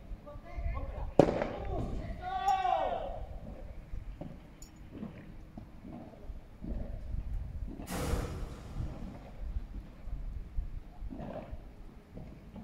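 A sharp crack of a padel ball being struck about a second in, followed at once by a player's loud falling call; then scattered small knocks and voices on the court, with a brief rushing burst of noise about eight seconds in.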